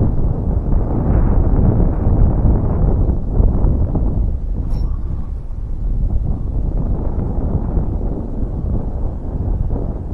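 Wind buffeting the microphone: a loud, steady, low rumble with no letup, and one brief click about five seconds in.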